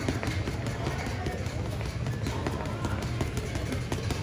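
Boxing gloves hitting a heavy bag in a rapid flurry of punches, one strike after another in quick, uneven succession.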